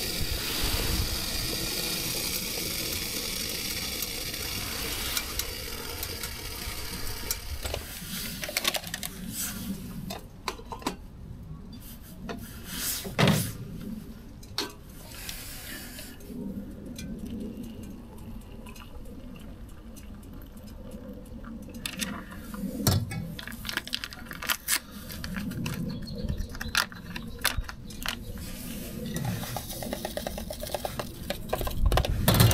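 MSR Reactor gas canister stove hissing, with water boiling in its pot, fading out over the first eight seconds or so. Then scattered clinks and knocks of the metal pot, lid and utensils being handled.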